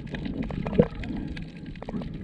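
Water sloshing and bubbling as heard underwater, muffled and irregular, with scattered small clicks and one sharper click just under a second in.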